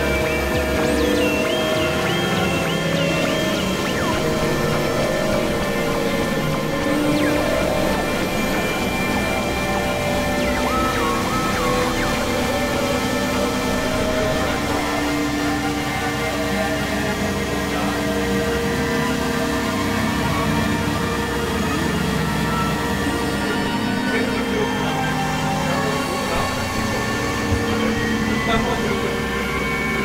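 Experimental electronic music: dense, layered synthesizer drones at a steady level, with a few warbling high tones wavering over them.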